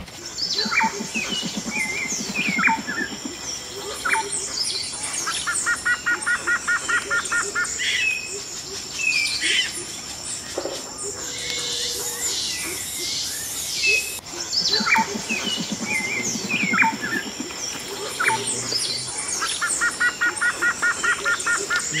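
Forest ambience of many birds chirping and calling over a steady high insect buzz, with a fast trill of evenly repeated notes twice. The same stretch of calls comes round again about fourteen seconds in, as in a looped recording.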